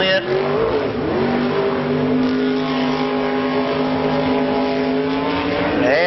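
Jet sprint boat's engine running hard at high revs, over the rush of its water spray. The pitch dips briefly about a second in, then rises and holds steady as the boat powers out of the turn.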